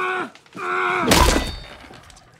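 A man lets out two drawn-out, strained groans in the middle of a violent fight. A heavy thud of a blow lands just after a second in.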